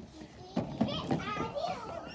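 Young children's excited voices, shouting and chattering at play, starting about half a second in.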